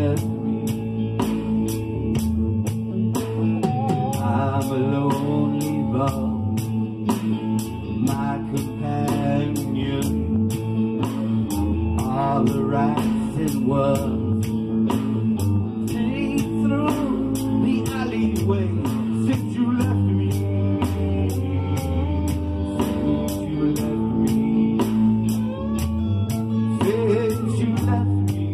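A small band playing an instrumental stretch of a blues-rock tune: a steady drum beat under bass and chords, with a lead line that bends in pitch.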